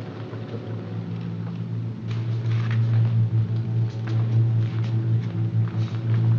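A car engine running as the car pulls up: a steady low drone that grows louder about two seconds in.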